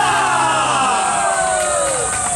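A group of voices giving one long shout that falls in pitch, over the last held chord of the yosakoi dance music, which stops about a second in.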